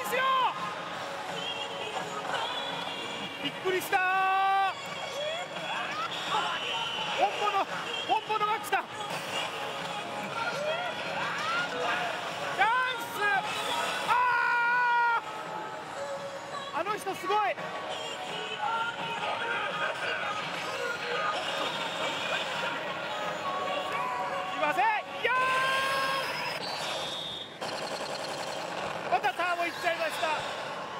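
Hokuto no Ken Shura no Kuni pachislot machine playing its electronic music and voice effects over the din of the parlour, mixed with excited shouting.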